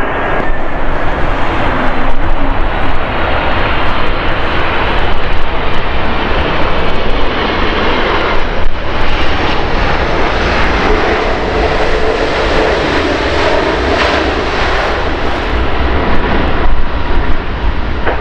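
Boeing 747-400 airliner touching down and rolling out on the runway, its four General Electric turbofan engines running with a loud, steady jet noise.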